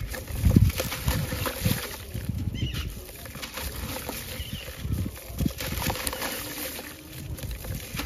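A wet, gritty sand-cement chunk crumbled and squeezed by hand over a tub of water, with crunching and crumbs and water dribbling and splashing into the water. Irregular soft thumps and crackles, the loudest about half a second in.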